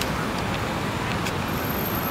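Steady noise of road traffic.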